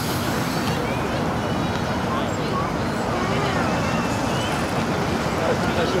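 Steady open-air noise of wind and choppy water, rumbling in the lows, with faint voices in the background.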